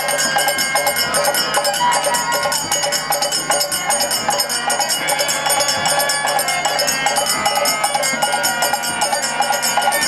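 Bengali Harinam kirtan ensemble playing: bamboo flute and harmonium carry the tune over khol drum strokes, with small hand cymbals ringing steadily and women singing.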